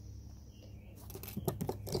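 Leather moccasin and sinew handled while a knot is tied: soft rustling and several sharp short crackles in the second half, over a steady low hum.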